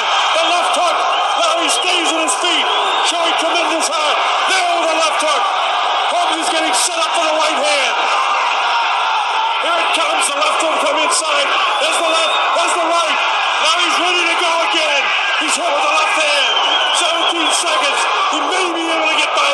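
Large arena crowd yelling and cheering without a break, many voices shouting over one another, with scattered short sharp impacts.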